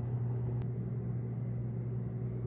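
A steady low machine hum with a faint click about half a second in.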